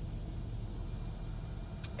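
Steady low hum inside the SUV's cabin, with the climate-control panel lit and working.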